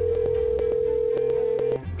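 Telephone ringback tone, as the caller hears it: one steady ring about two seconds long that stops shortly before the call is answered.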